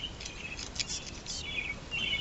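Small birds chirping: a run of short, high chirps and warbles, several in quick succession.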